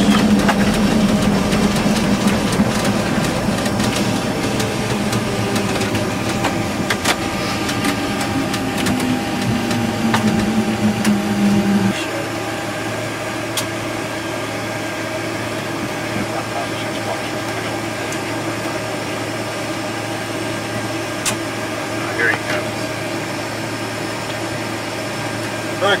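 Boeing 727-200 cockpit noise: steady engine and airflow noise with a low tone that slides slowly down in pitch. About twelve seconds in, the louder part stops abruptly, leaving a quieter steady hum.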